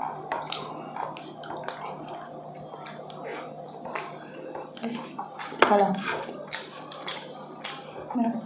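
Close-up eating sounds: chewing with small clicks and taps of utensils and bones against plates. A short voiced murmur comes about five and a half seconds in, over a steady low hum.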